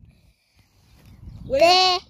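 A child's loud, high-pitched sing-song call, drawn out, starting about one and a half seconds in after a quiet spell.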